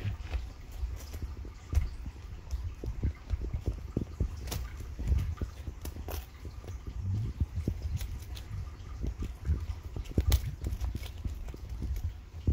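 Irregular knocks, taps and clicks of things being handled close to the microphone, with a few louder knocks, over a low steady rumble.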